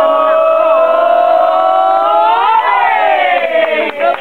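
Several voices holding a long drawn-out note together. About two and a half seconds in, the pitch slides up, then it falls away toward the end.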